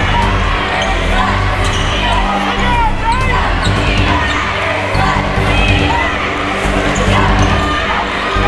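Basketball game sound in a gym: a ball bouncing on the hardwood amid voices, over steady low music with held bass notes.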